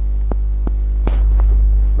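Loud, steady electrical mains hum with a deep low drone and a ladder of higher steady tones, carried on the recording. Four short clicks sound over it within the first second and a half.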